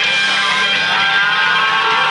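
Rock band playing live, led by a loud distorted electric guitar holding sustained notes, some of them bending in pitch.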